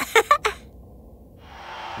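A short voiced 'boom!' cheer, then a soft hiss that swells up over the last half second.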